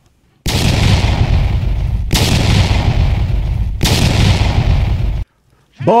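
An edited-in transition sound effect of three loud, noisy blasts, each starting suddenly and running for under two seconds before the next, then cutting off sharply.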